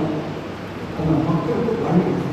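A man's voice lecturing through a microphone and loudspeakers in a reverberant hall, dropping briefly and picking up again about a second in, over a steady noisy background hiss.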